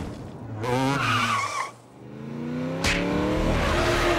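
Cartoon action sound effects: a short warbling, engine-like whine, a brief drop-off, then a sharp crack about three-quarters of the way in and an engine-like whine rising steadily in pitch.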